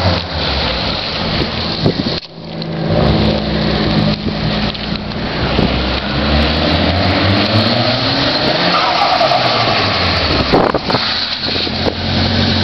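Nissan Silvia S13 doing donuts: the engine is held at high revs, its pitch rising and falling, while the spinning rear tyres squeal without a break. The sound drops out briefly about two seconds in.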